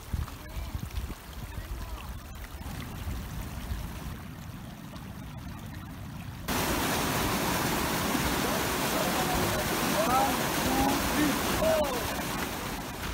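A low, uneven rumble, then about six seconds in a sudden switch to the loud, steady rush of a glacial meltwater stream, with faint voices over it near the end.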